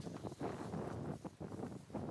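Outdoor wind blowing across the microphone, an uneven noisy rush that rises and dips.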